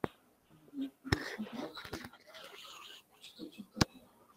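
Three sharp computer mouse clicks, near the start, just after a second in and near the end, with quiet, low speech between them.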